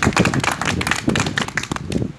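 A small group of people clapping their hands in applause, fading near the end.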